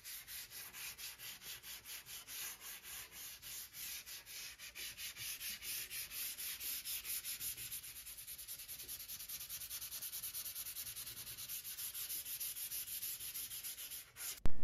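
Sandpaper rubbed by hand back and forth along the edge of a stained oak tabletop, in quick, even, hissing strokes of about five a second, sanding the fresh stain back.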